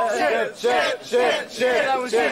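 A group of voices chanting together in a steady rhythm, about two shouts a second: a drinking chant while a man downs his drink.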